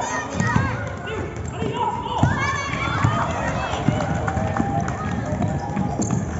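Youth basketball game in play: players' and spectators' voices calling out on court over running footsteps, with scattered thumps of the ball and feet on the floor.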